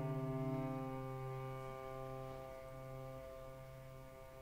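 Cello holding a long, low bowed note with piano accompaniment, the sound slowly fading away.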